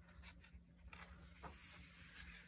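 Faint rustle and soft taps of paper pages being turned by hand in a handmade journal.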